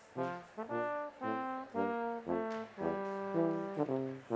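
Brass ensemble playing ceremonial processional music: a run of short, separated chords, then a longer held chord about three seconds in.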